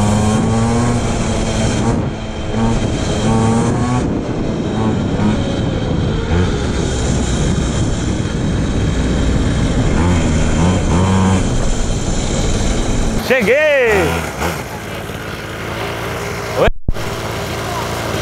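A pocket bike's small engine running and revving as it is ridden along the street, its pitch climbing and dropping with the throttle, with wind rushing over the microphone. After about thirteen seconds it rises and falls once more and the sound becomes quieter.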